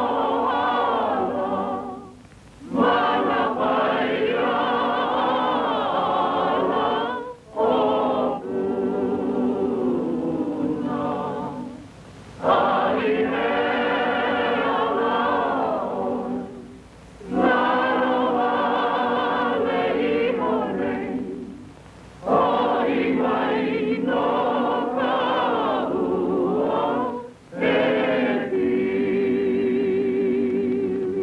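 A choir singing long, slow phrases, with a short break between phrases about every five seconds.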